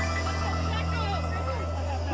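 Live band music heard from within the crowd: a steady held bass note under sustained chords, with voices over it.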